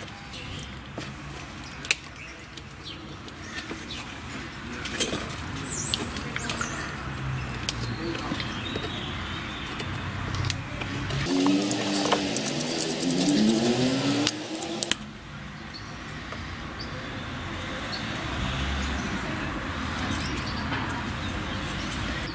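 Cold Steel SR1 Lite folding knife whittling a small stick of wood: scraping shaving strokes with occasional sharp clicks. About halfway through, a louder stretch of a few seconds carries a wavering pitched sound in the background.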